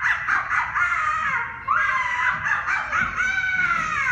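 A high-pitched voice giving about five drawn-out cries with no words, several rising then falling in pitch, the last a long falling one near the end, heard in a room.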